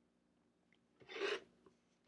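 OLFA rotary cutter blade rolling along an acrylic ruler, slicing through four layers of fabric on a cutting mat: one short cutting stroke lasting under half a second, about a second in.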